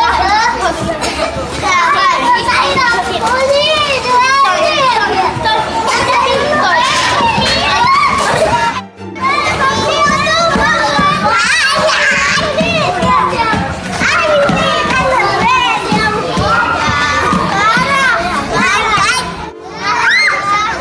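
Many young children's voices chattering, calling out and squealing over one another at play, cut off briefly about nine seconds in.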